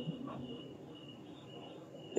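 Faint insect chirping in the background: short high notes repeating through a pause in the speech.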